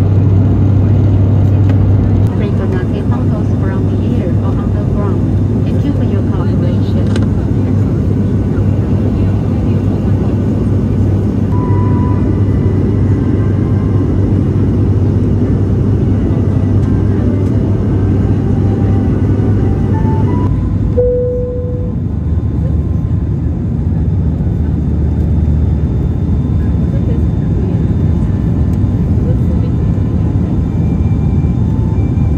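Cabin drone of an ATR 72-600 in flight: a steady low hum from its six-bladed turboprop propellers under a wash of air noise. About two-thirds of the way through, the hum drops slightly in pitch and the hiss thins, with a short tone.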